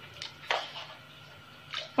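Salt being spooned into a large metal pot of water for stock, with a short, soft impact about half a second in and a fainter tick just before it.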